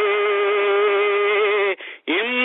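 A singing voice holding one long, slightly wavering note that breaks off just before the end.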